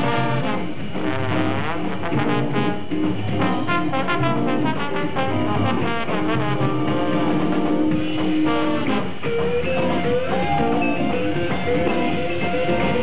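Instrumental jazz-funk band playing live, with the horn section to the fore, including one long held note about halfway through.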